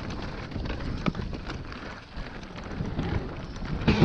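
Mountain bike rolling fast down a dirt trail: a steady low rumble of wind over the camera microphone and tyres on the ground, with scattered clicks and rattles from the bike.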